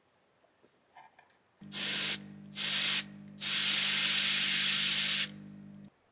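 GAAHLERI Swallowtail trigger-type airbrush blowing air through its nozzle: three hisses, two short ones and then one of about two seconds. Under them a steady low hum starts with the first hiss and stops just before the end.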